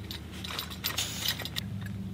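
Light clicks and clinks of a Jetboil Flash stove being assembled: the gas canister, with its burner on, is handled and the orange plastic tripod stand is fitted under it. A steady low hum runs underneath.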